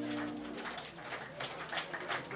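The final held chord of an early-jazz band with saxophones and tuba fading out within the first half-second or so, followed by low room noise with faint murmuring voices.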